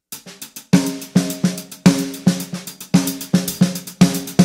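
DW drum kit playing a hi-hat and snare groove: a few light hi-hat ticks, then steady strikes about three a second with the snare hitting between some of the hi-hat hits, the drum ringing after each stroke.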